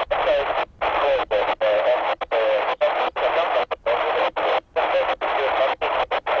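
Air-band radio receiver hissing with static, a weak, unreadable transmission buried in the noise. It keeps breaking up with sudden short dropouts, two or three times a second.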